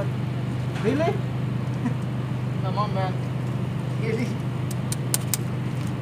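Steady low hum of wall-mounted air-conditioner units running, with a few quick sharp clicks of scissors snipping hair near the end.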